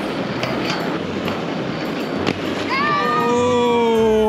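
Inline skate sliding along a metal handrail: a steady scraping hiss with a few sharp clicks. About three seconds in, a long drawn-out shout starts, sliding slightly down in pitch.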